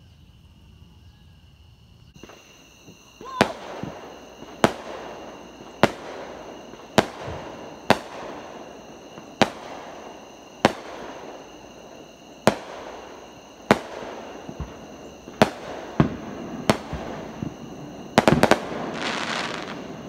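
Fireworks going off: sharp bangs about once a second, each with a rumbling echo, ending in a quick rattle of several cracks and a short hiss. Crickets chirr steadily underneath.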